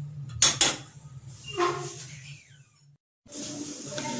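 Glass pot lid with a steel rim set onto a steel cooking pot, with two sharp clinks about half a second in.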